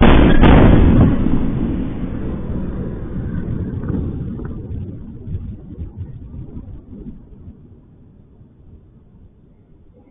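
A powerful explosion goes off suddenly, loudest for about the first second, then trails into a long low rumble that fades away over the following several seconds. It is heard through a security camera's microphone, which cuts off the higher sounds.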